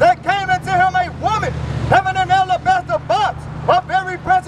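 A man's voice reading scripture aloud in short phrases through a handheld microphone and megaphone, over a steady low rumble of street traffic that swells briefly near the middle.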